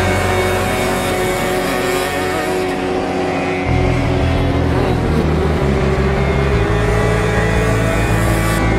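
Kart engines running as several karts lap the course, one rising in pitch about five seconds in, mixed with loud background music.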